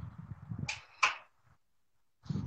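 Low rumbling handling noise, then two short sharp clicks about a third of a second apart.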